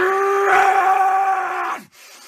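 A man's single long yell, held on one strained pitch for nearly two seconds, rising into it at the start and breaking off near the end.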